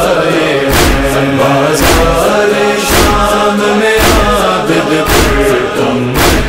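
Male chorus chanting a noha, an Urdu lament, in held, wordless tones. A deep thump about once a second keeps a slow beat.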